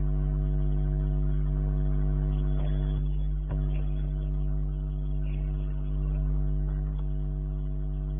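Steady electrical hum on the recording, an unchanging buzzy drone, with one faint click about three and a half seconds in.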